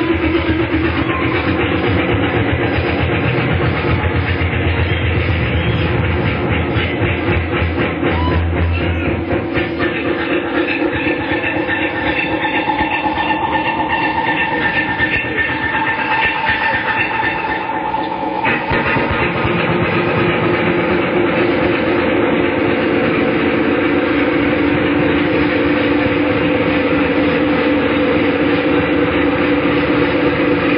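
Rock band playing live in a long instrumental passage: sustained electric guitar notes over a steady, driving rhythm, on a dull, muffled recording with no highs. The deep bass thins out about nine seconds in.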